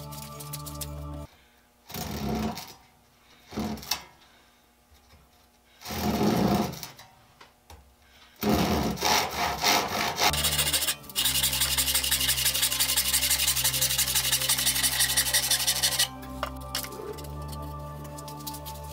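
Handsaw cutting through wooden boards in quick, even strokes for about seven seconds from halfway in, after a few short scrapes earlier on. Background music stops about a second in and comes back near the end.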